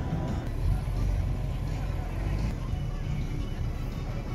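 Busy outdoor ambience: a steady low rumble with voices and music mixed in.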